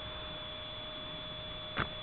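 Steady background hiss with a faint constant high whine and a lower hum, and a single brief tap near the end as the paper disc sleeve is handled and set down.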